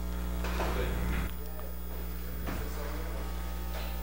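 Steady low electrical mains hum and room tone through the chamber's sound system, easing slightly about a second in.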